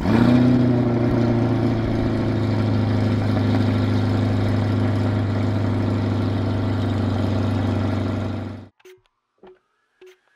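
A C8 Corvette's V8 starting: it catches with a brief rev flare, then settles into a steady, loud idle through the quad exhaust. It cuts off abruptly near the end.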